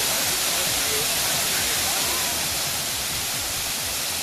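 Waterfall pouring down onto bathers standing beneath it: a steady, dense rush of falling and splashing water.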